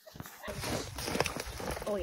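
Footsteps crunching on packed snow, with wind rumbling on the microphone, starting about half a second in.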